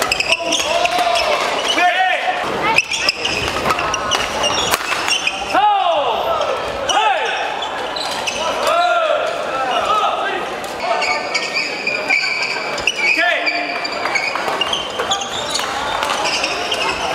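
Doubles badminton rallies on a wooden gym court: racket hits on the shuttlecock and short, sharp shoe squeaks as players move, over voices in the hall.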